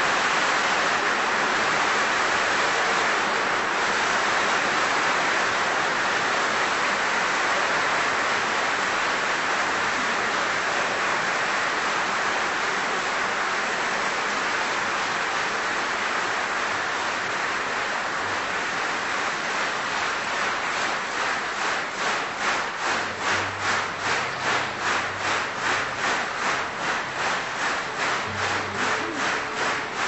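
Audience applause in a live opera recording, a dense steady clatter of many hands. About two-thirds of the way in it turns into rhythmic clapping in unison, about two claps a second.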